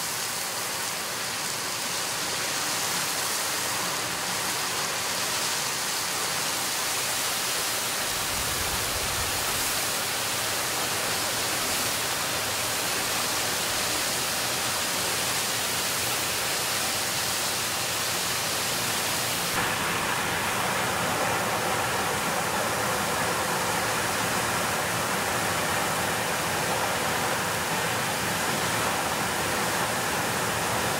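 Water from a broken underground water main jetting up out of a hole in the street and falling back as spray: a steady rushing hiss. Its sound shifts abruptly, fuller in the middle range, about two-thirds of the way through.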